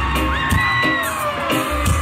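Live concert music over a stadium PA: deep sustained bass notes under a steady drum beat, with a high melody line that glides up and down.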